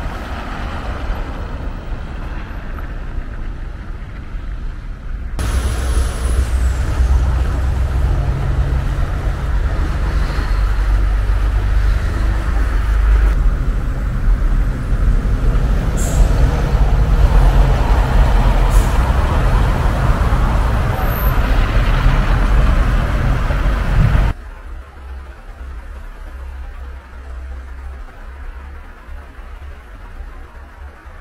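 City road traffic: cars driving past with engine rumble and tyre noise. It gets louder about five seconds in and drops to a quieter, low hum about six seconds before the end.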